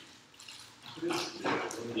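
Speech only: after a short lull, voices in the room trade brief replies such as "yeah".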